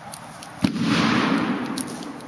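A bag filled with an acetylene and oxygen mix goes off in a fire with a single sharp bang about two-thirds of a second in, followed by a rush of noise that fades over about a second.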